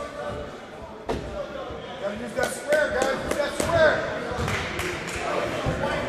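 Voices in a gym with no clear words, a basketball bouncing on the hardwood court, and a sharp bang about a second in followed by a few more knocks.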